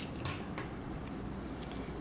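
Aluminium foil crinkling and clear tape rustling as hands press and tape a foil strip down onto cardboard, a few soft scattered rustles.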